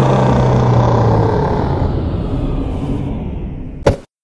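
A loud rumbling roar that slowly fades, then cuts off abruptly just before the end with a short click.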